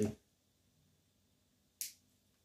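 One short, sharp snip near the end, as side cutters cut a piece of desoldering braid (copper wick) off its spool; otherwise near silence.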